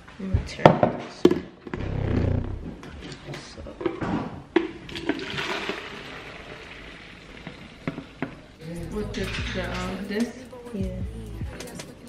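Hot water poured from a saucepan into a plastic container, a pouring hiss lasting a couple of seconds in the middle, after a few sharp clanks of the pot being handled.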